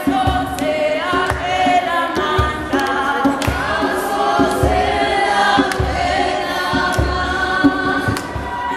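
A group of voices singing a gospel song together, over a steady low beat of about two thumps a second.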